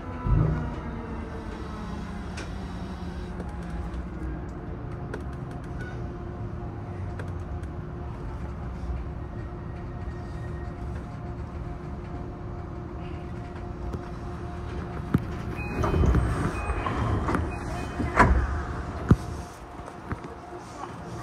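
Cab of a JR East E233-8000 series electric train: steady running and motor hum as the train comes into a station and stands. Louder knocks and a swell of noise come from about fifteen to nineteen seconds in.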